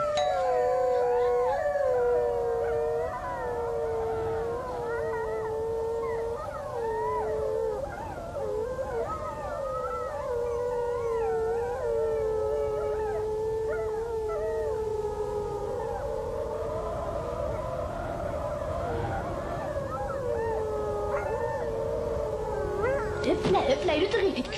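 Howling wind of a polar storm, a sound effect made of several wavering tones that slide up and down, with a steady held tone under it for about the first seven seconds.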